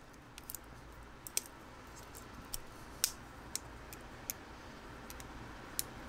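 Gerber multi-tool being flipped open by hand: about eight short, separate metal clicks, spread irregularly, as the handles swing round to bring out the pliers jaws.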